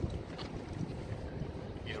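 Outdoor wind blowing across the microphone, a steady low rush without distinct events.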